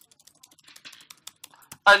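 Typing on a computer keyboard: a quick run of light key clicks, several a second, with a man's voice starting near the end.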